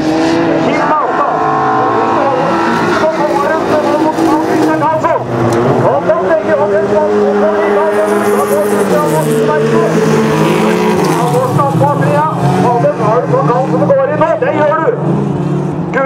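Folkrace cars' engines running hard around the track, their notes rising and falling as they shift and slow, with a loudspeaker announcer talking over them.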